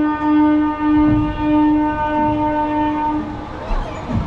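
Train horn sounding one steady note in a run of short, joined blasts, and stopping about three and a half seconds in. A brief low thump follows near the end.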